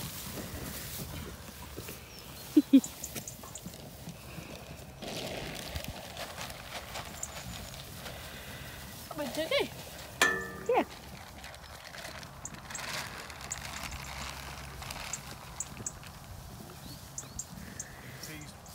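Wind buffeting the microphone over a grazing flock of sheep, with two sharp knocks about two and a half seconds in and a short bleat about ten seconds in.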